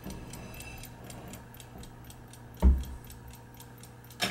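Sargent & Greenleaf Model #4 time lock's single clock movement running, a rapid, even ticking of several ticks a second. A single loud knock comes about two-thirds of the way in as the metal lock assembly is handled.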